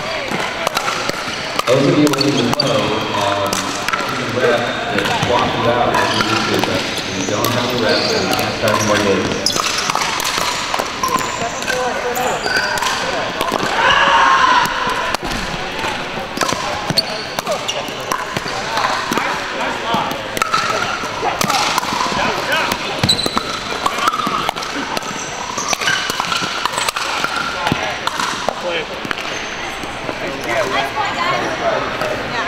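Pickleball paddles hitting the plastic ball, a string of short sharp pocks scattered irregularly from play on several courts, over a steady babble of players' voices in a large indoor hall.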